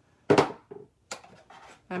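Acrylic stamping blocks falling over and clattering down: one sharp knock about a third of a second in, then a lighter click about a second in.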